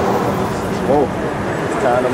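Brief indistinct voices over a steady outdoor background noise, with a short spoken phrase about halfway through.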